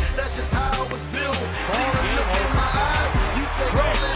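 Background music with a steady beat and a singing voice.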